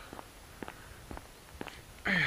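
Faint footsteps of a man walking on a paved country lane, about two steps a second.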